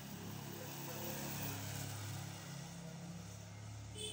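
Small motor scooter engine passing close by, running steadily. It is loudest about a second and a half in and fades near the end.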